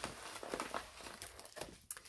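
Faint, irregular crinkling and rustling of a plastic-packaged craft item as it is handled.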